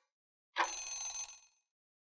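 Countdown-timer end sound effect: a bell rings once, starting about half a second in, for about a second before fading out.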